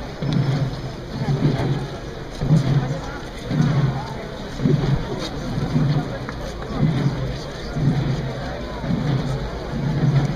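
Procession drums beating a slow, steady march, about one low beat a second, with a crowd talking.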